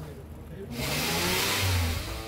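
1957 Pontiac Bonneville's fuel-injected V8 running as the car drives slowly past, a low rumble with a pitch that rises and falls. A loud rushing hiss comes in sharply about a second in.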